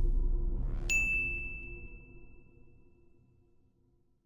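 Logo intro sound effect: a low rumble fades away while a short rising sweep leads, about a second in, into a single bright ding. The ding rings out on one clear tone and dies away over about two seconds.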